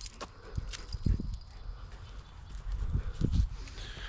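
Footsteps on the forest floor: a few soft, irregular thuds with small crackles of dry leaves and twigs underfoot.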